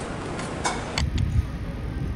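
Outdoor city street noise, a steady wash with one brief whoosh a little past the first half-second. It changes abruptly about a second in to an uneven low rumble with occasional knocks.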